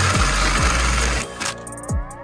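Cordless DeWalt drill spinning a hole saw through a PVC backer board and the wall sheathing behind it, cutting a cable hole; the cut stops sharply about a second and a half in. Background music with a heavy, regular bass beat plays underneath and carries on.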